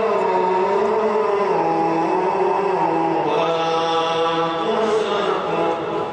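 A man reciting the Quran in the slow, melodic mujawwad style, holding one long unbroken phrase. The pitch steps down early on and climbs again about halfway through.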